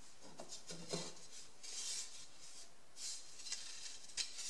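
Faint rubbing, scraping and light knocks of balsa wood strips being handled, slid and laid on a building board.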